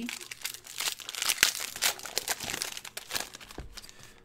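Plastic-foil trading card pack wrapper crinkling as it is handled and opened, in irregular rustles that fade toward the end.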